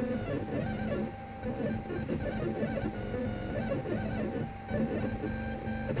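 A 3D printer at work on a keyring: its stepper motors whine in short pitched tones that keep jumping from note to note as the print head moves, over the steady hum of its fans.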